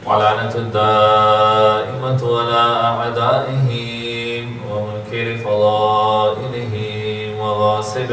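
A man's voice chanting a devotional Arabic recitation in long, drawn-out melodic phrases, with short breaks between them.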